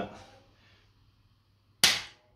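A single sharp click near the end: a spring-loaded Activator chiropractic adjusting instrument firing one thrust onto the upper back at the T1 vertebra, driven straight downward.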